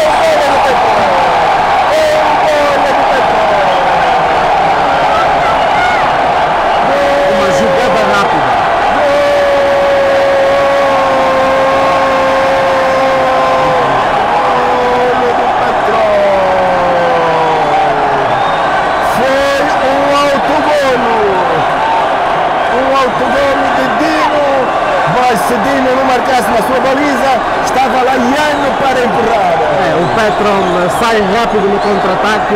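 Stadium crowd cheering after a goal: a steady roar of many voices, with single shouts and long calls rising and falling over it.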